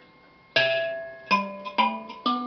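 Metal keys of Shona mbiras plucked one note at a time, comparing matching notes on a njari and a nyunga nyunga tuned the same. Three notes about half a second apart, each starting sharply and ringing on as it fades; the first comes about half a second in.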